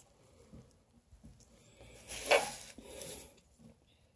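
Quiet handling sounds of pins being set into a foam mounting board around a pinned centipede, with one brief louder rustle a little past two seconds in and a softer one about a second later.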